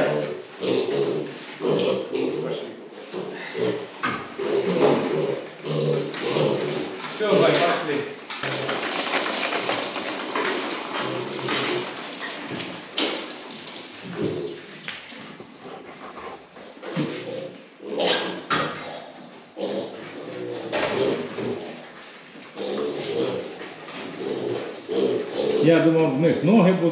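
Young piglets grunting and moving about on a plastic slatted pen floor, with irregular knocks and clatters.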